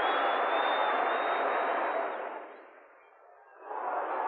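Football stadium crowd cheering after a goal, fading out about two and a half seconds in. After a brief lull, the crowd noise of the next match rises near the end.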